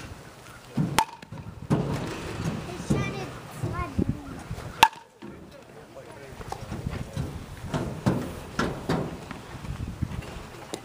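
A youth baseball bat hitting a ball twice, about four seconds apart. Each hit is a sharp crack with a short ring, and the second is louder. People talk in the background.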